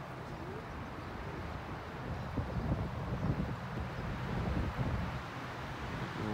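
Distant freight train, about two miles off, heard as a faint low rumble. Wind buffets the microphone over it.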